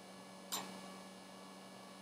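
Faint steady electrical hum, with one short click about half a second in.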